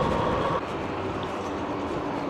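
Road bike rolling along a tarmac lane: steady rushing tyre and wind noise, with a faint hum that changes pitch partway through.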